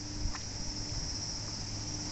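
Steady high-pitched chorus of insects, an unbroken buzz that holds at one pitch.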